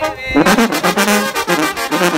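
Mexican banda-style brass band playing, with a sousaphone and trumpets, and a man singing over it.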